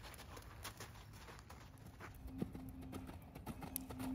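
Faint hoofbeats of a ridden horse moving under saddle, a quick irregular run of soft strikes. A faint steady hum comes in about halfway.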